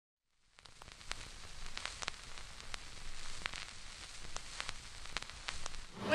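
Faint hiss with scattered sharp crackling clicks, irregular, a few each second.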